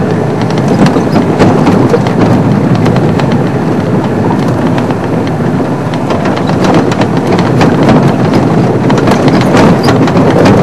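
Safari vehicle driving over a rough dirt track: a steady loud rumble with many small knocks and rattles scattered through it.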